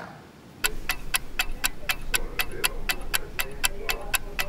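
Clock-ticking sound effect, with even, sharp ticks at about four a second, starting just under a second in over a faint low hum.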